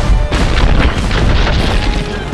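Animated-film action soundtrack: loud, deep rumbling booms under a driving music score.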